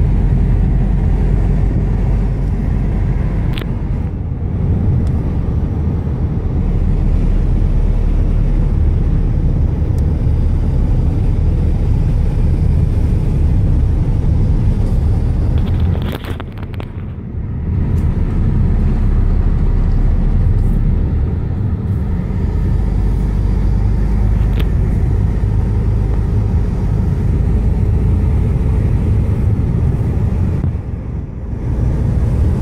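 Car running up a winding mountain road, heard from inside the cabin: a steady, loud engine and road rumble. About halfway through there is a short knock and the rumble briefly drops.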